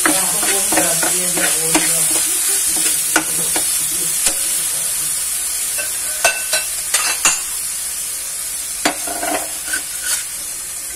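Shrimp and pork sizzling in a frying pan, with a steady high hiss, while a metal utensil scrapes and clinks against the pan as they are stirred. The scraping is busiest in the first couple of seconds, then comes as single sharp clinks every second or so.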